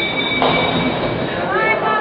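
Ninepin bowling alley sounds: a steady high two-note whine that stops with a sharp knock about half a second in, over the noise of a busy lane hall. A man starts speaking near the end.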